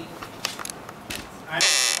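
A short, loud buzz lasting under half a second near the end, with a few faint clicks a little earlier.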